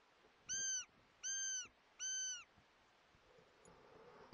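Three short, high-pitched calls, evenly spaced about two-thirds of a second apart, each rising, holding and falling in pitch.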